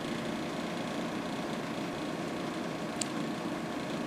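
Quiet, steady hum and hiss of bench test equipment running, with one faint click about three seconds in.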